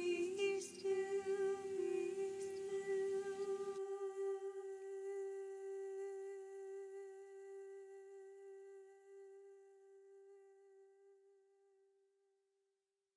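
The end of a slow, gentle song: a humming voice over a soft backing that stops about four seconds in. One long held tone is left, fading out to nothing near the end.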